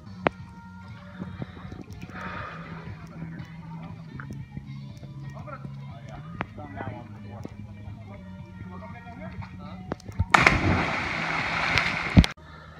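Background music with a steady low bass under faint sounds. About ten seconds in comes a loud splash, lasting a second or two, of a person plunging into the river after jumping from a tree.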